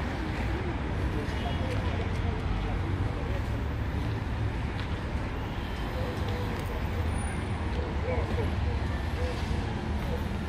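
Steady city traffic rumble from the surrounding streets, with faint, indistinct voices of people some way off.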